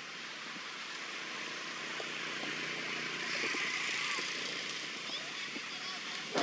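Outdoor background noise: a steady hiss that slowly swells and then eases off again, with a few faint ticks.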